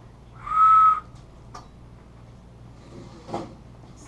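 A small whistle blown once: a single breathy note about half a second long, held at one steady pitch.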